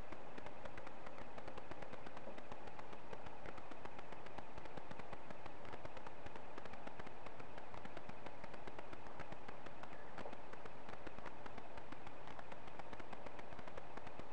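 Steady hiss from a low-quality camera microphone, with faint scattered ticks and no distinct sound standing out.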